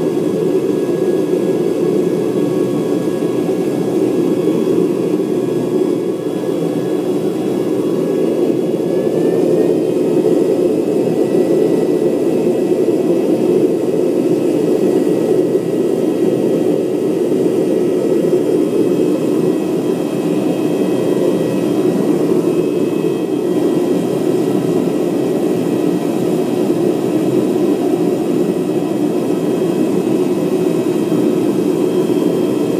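Propane furnace burner running with forced air from a hair dryer blowing into the burner tube: a steady, loud rushing noise with a faint whistling tone that rises slightly about nine seconds in.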